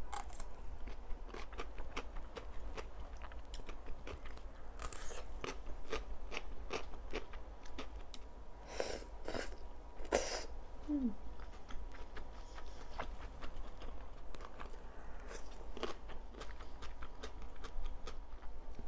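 Close-miked crunching and chewing of raw green vegetables, with many small crisp clicks. A couple of louder slurps of vermicelli noodles come about halfway through.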